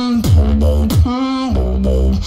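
Beatboxing: pitched vocal notes that slide down into deep bass tones, repeating about every half second, with sharp mouth clicks between them.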